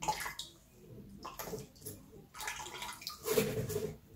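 A spoon pressing and scraping blended ginger pulp against a wire-mesh strainer, with ginger juice trickling and splashing into a plastic pitcher below, in short irregular strokes that are loudest a little past three seconds in.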